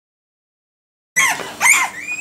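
Newborn puppies squeaking: two short, high-pitched squeals, starting about a second in.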